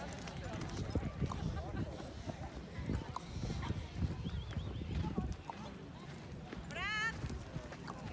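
Footsteps on sandy ground and the thuds of a handheld phone being carried, an irregular run of dull low thumps for about five seconds, then a short high-pitched call near the end.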